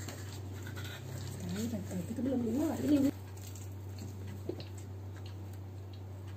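Wordless humming with a wavering pitch for about a second and a half, cut off suddenly, over light rustling as pizza slices are pulled from cardboard boxes. A steady low electrical hum runs underneath, with a couple of faint clicks later.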